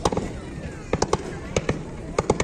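Fireworks going off: several sharp bangs, one or two at the start and a quick cluster of about five from about a second in.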